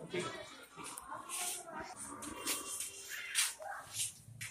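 Indistinct background voices of several people talking at once.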